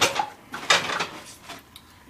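Short clattering sounds at a kitchen sink: a knock, then a brief rush of noise about two thirds of a second in that fades away.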